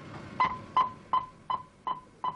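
A series of identical short high-pitched beeps repeating evenly, about three a second.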